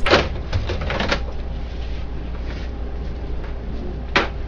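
Plastic duplex unit of a Dell 5330dn laser printer being slid out of its slot: a few short scraping and clicking sounds in the first second, then only a low steady hum.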